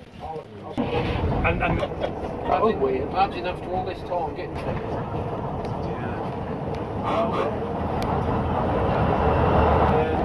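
Leyland Titan PD2 double-decker bus's diesel engine running as the bus drives off and gets under way, growing louder near the end, with passengers' voices chatting over it.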